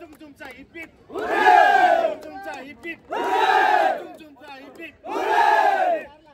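A group of many voices shouting a cheer in unison three times, each shout about a second long and about two seconds apart, with quieter scattered voices in between: a winning team's celebration cheer at a trophy presentation.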